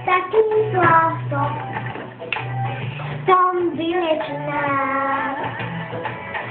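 A young girl singing a song, with a long held note in the second half, over a backing track with a low pulse that comes and goes about once a second.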